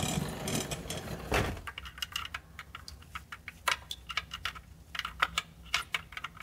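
A ratchet with a Torx bit clicking in quick, uneven runs as it backs out the automatic transmission filter's retaining bolt, after about a second and a half of tool-handling noise; a few clicks stand out louder.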